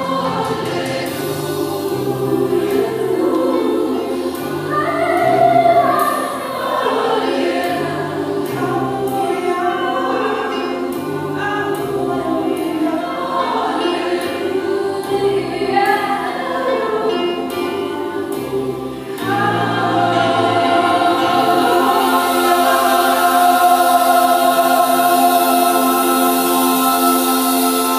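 Mixed gospel choir singing a rhythmic passage over a pulsing bass line, then about 19 seconds in swelling into a louder, long held chord. The singing echoes in a church.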